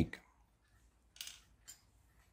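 Two brief plastic rustles and clicks from clear suction cups being handled between the fingers, the first a little over a second in and the second shortly after.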